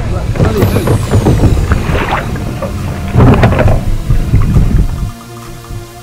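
Loud wind buffeting on the camera microphone over kayak paddle strokes and water splashing, in irregular surges. About five seconds in this drops away and electronic background music with a steady beat takes over.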